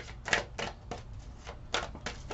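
Tarot cards being handled and shuffled to draw the next card: a series of sharp, irregular clicks and snaps, the loudest about a third of a second in.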